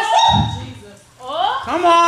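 A woman's voice through a microphone in long, drawn-out tones rising in pitch, sung or wailed rather than spoken as words. One tone trails off just after the start, and another rises from about a second in.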